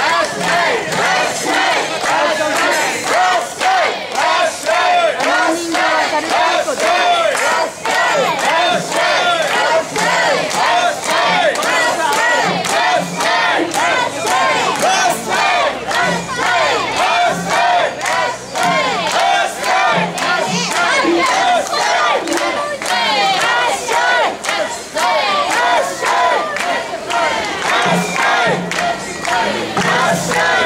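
Mikoshi bearers shouting a rhythmic carrying chant in chorus as they carry the portable shrine. The many voices keep up a steady beat of short calls without a break.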